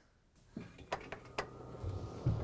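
Four or five faint, sharp knocks and clicks from a clothes dryer's metal drum as it is searched by hand. A low drone comes in near the end.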